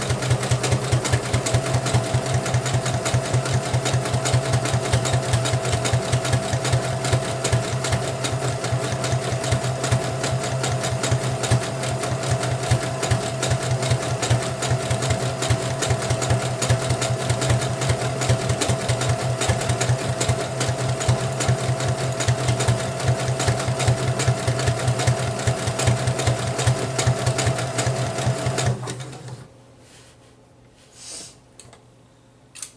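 Brother electric sewing machine running steadily at speed, the needle stitching in a fast, even rattle over a steady motor hum. It stops abruptly near the end.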